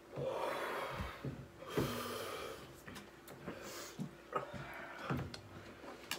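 A person breathing hard in and out through an open mouth, drawing air over the tongue to cool a mouth burning from an extremely hot chili chip. There are three long breaths in the first four seconds, with a few soft thumps between them.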